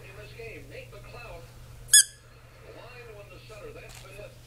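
A squeaky rubber toy ball squeezed once, giving a single short, high squeak about halfway through.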